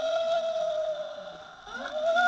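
Electronic moaning from an animated shaking-ghost Halloween decoration: one long wavering wail that holds a pitch, dips, then swoops upward near the end. It is heard played back through a portable video player's speaker.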